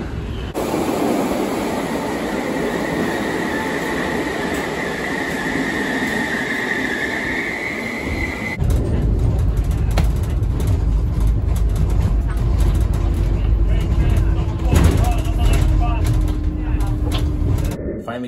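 Underground railway station noise: a train running with a high metallic squeal that grows louder for several seconds and then cuts off. After that comes a steady low rumble inside a car's cabin, with a faint steady hum near the end.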